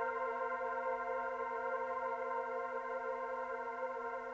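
Korg Volca synthesizers holding a sustained chord: a steady drone of several held notes that slowly fades out, with no drums.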